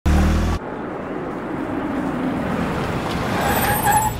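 A car driving up and slowing to a stop, with a short loud low tone at the very start and a brief rising squeal of brakes near the end.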